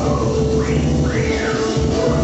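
Loud live chiptune breakcore dance music with heavy bass. About halfway through, a synth sweep rises and then falls in pitch.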